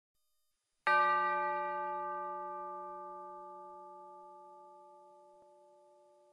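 A bell struck once about a second in, its ringing tone fading slowly away over several seconds.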